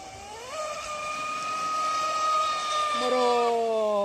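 High-revving whine of an RC speedboat's Leopard 4074 2200 kV brushless electric motor on 6S. It climbs in pitch about half a second in as the boat accelerates, holds steady, then falls in pitch near the end as the boat passes by.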